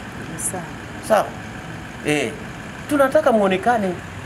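A man speaking Swahili in short broken phrases, then more continuously near the end, over a steady low background hum.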